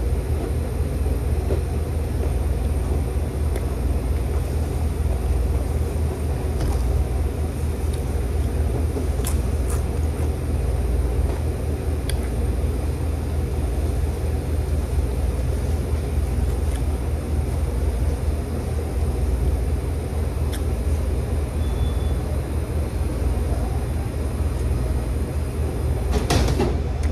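Steady low background rumble, like ventilation or room noise in a restaurant, with a few faint clicks scattered through it.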